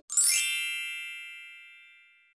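A single bright chime sound effect, struck once as the street audio cuts out and ringing away steadily over about two seconds.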